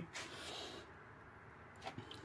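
Faint breath noise for under a second, then near-silent room tone, with a small click just before the end.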